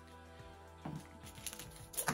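Faint background music under quiet handling noise from comic books being moved on a desk: a few soft rustles and small clicks, with a sharper click near the end.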